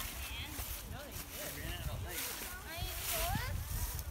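Footsteps shuffling through a thick layer of dry fallen leaves, the leaves rustling with each step about once a second. Faint, indistinct voices of the walkers are heard under the rustling.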